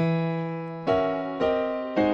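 Piano playing sustained gospel-style chords: an E octave struck at the start, then two more chords about a second in and shortly after, each ringing and slowly fading.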